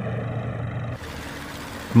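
Heavy vehicle engine rumble, steady and low. About a second in it changes to a broader, noisier rumble.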